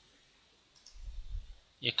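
Faint computer mouse clicks about a second in, with a dull low bump under them.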